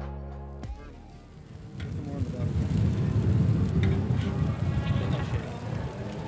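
Intro music fades out in the first second; then wind buffets the microphone in a loud, rough low rumble.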